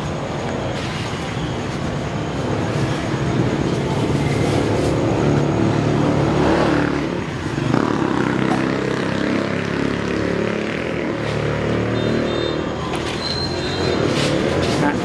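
Road traffic: vehicle engines running and passing, a steady drone that swells a little in the middle.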